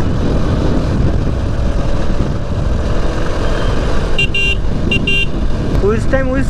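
Motorcycle riding at road speed: a steady engine rumble mixed with wind rushing over the helmet or camera. Two short horn beeps come about four and five seconds in.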